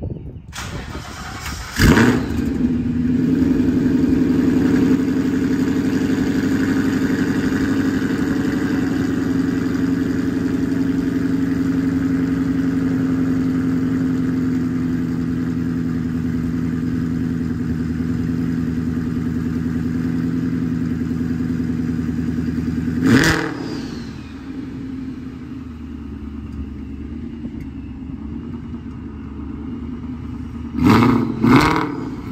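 A 2014 Mustang GT's 5.0 V8, breathing through long-tube headers and a Borla exhaust, starts with a sharp flare of revs about two seconds in and then idles steadily. About 23 seconds in it gives one quick rev blip, then settles to a quieter idle.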